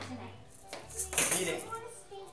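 A clatter of small plastic toys knocking against plastic bowls and buckets, loudest about a second in.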